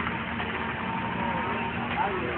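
A snowmobile engine runs steadily, with a thin high tone holding one pitch through the middle. A short burst of laughter comes at the very start.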